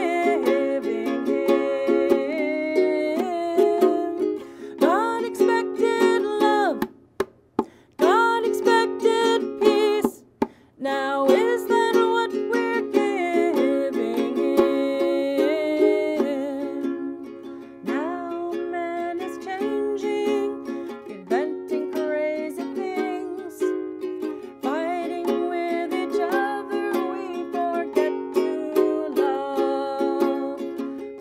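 A woman singing to her own ukulele strumming, a simple chordal accompaniment. The music breaks off briefly twice, about seven and ten seconds in.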